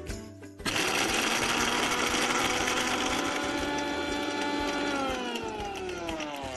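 Electric mixer grinder motor starting up about a second in and running steadily at speed, blending mint chutney in its small steel jar. Near the end it is switched off and its pitch falls as it winds down.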